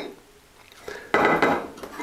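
A ceramic honing rod with a wooden handle set down on a countertop beside other sharpening rods, a sudden short clatter about a second in.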